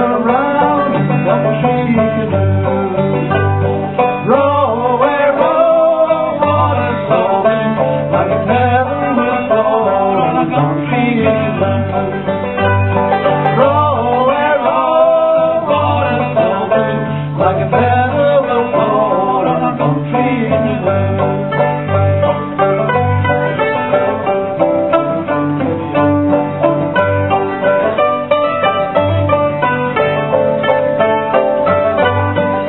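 Old-time string band playing live: banjo, acoustic guitar and mandolin over a steady alternating bass beat. A man sings from a few seconds in until about twenty seconds, and the instruments play on alone after that.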